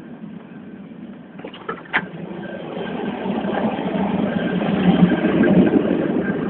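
Running noise of a TGV high-speed train heard from inside the train: a steady noise that grows louder over the second half. There is a sharp click about two seconds in.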